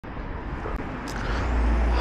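Wind rumbling on the microphone outdoors, a deep buffeting that grows louder over the two seconds, with a faint high whine rising in pitch underneath.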